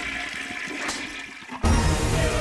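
Toilet flushing, a rush of water that dies down over a second and a half, then gives way abruptly to louder music.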